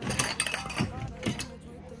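A quick run of clicks and short noisy strokes in the first half second, then a few fainter ones, as a bottle of DKNY Be Delicious perfume is handled.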